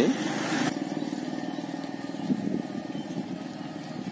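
A motorcycle engine running steadily, with a short hiss in the first moment that cuts off suddenly.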